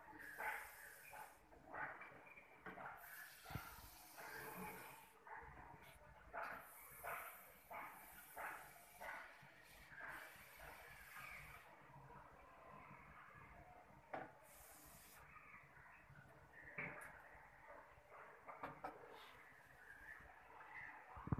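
A hand-pump pressure sprayer's wand hissing faintly in several bursts of one to two seconds, with short gaps between them. Faint knocks and handling clatter fall between the bursts.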